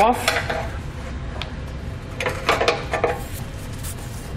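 Steel pry bar scraping and clicking against the metal exhaust hanger rod while prying a lubricated rubber isolator hanger off it: a few sharp clicks just after the start, then a second cluster of scraping about two and a half seconds in.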